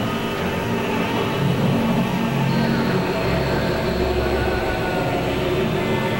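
Experimental electronic drone music from synthesizers: dense layered held tones over a low rumble. A thin high tone enters about halfway through, and the deepest layer swells soon after.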